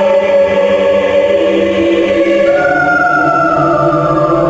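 Background music of slow, sustained choral chords, with a higher held note coming in about halfway through and sliding slightly down.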